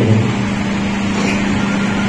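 A steady low hum with an even background hiss, holding at one pitch without change.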